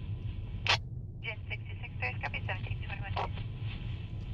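Emergency-services two-way radio voice traffic, thin and unintelligible, over a steady low vehicle rumble. A sharp click comes shortly before the voice starts.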